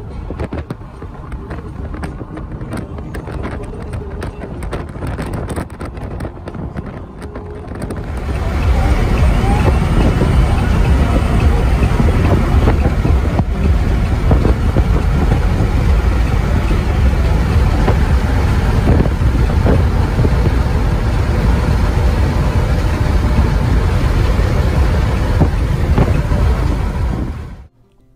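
Road and wind noise inside the cab of a moving Chevrolet pickup, with small clicks and rattles. About eight seconds in it swells into a much louder, steady low rumble that lasts until it cuts off just before the end.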